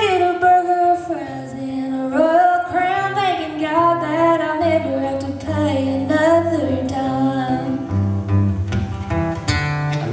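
A woman singing a country song live, accompanied by a strummed acoustic guitar; her voice drops out near the end, leaving the guitar.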